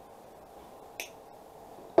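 A single sharp snip of small jewelry wire cutters trimming a piece of wire, about a second in.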